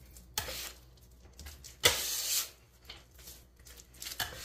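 Metal-bladed bench scraper scraping wet bread dough across a countertop: a short scrape under half a second in and a louder, longer one about two seconds in, with softer handling noises of the dough between.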